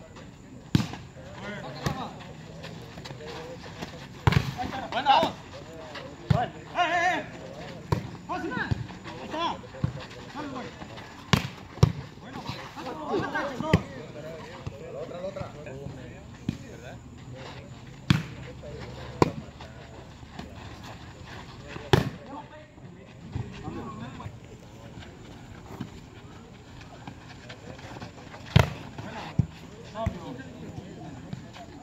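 Outdoor volleyball rally: a volleyball slapped by players' hands and forearms, sharp single hits a few seconds apart, with players shouting and talking in between.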